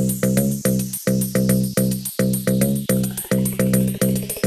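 Funkot dance music from a DJ mix. A buzzy, chopped bass synth pulses about four times a second under fast hi-hats.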